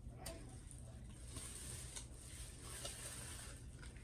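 Faint handling noises: a few light clicks and taps over a low steady hum, with a soft hiss that comes in after about a second.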